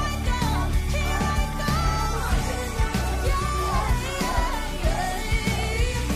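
Pop singing over band backing music with a steady drum beat; the sung line wavers and glides in pitch throughout.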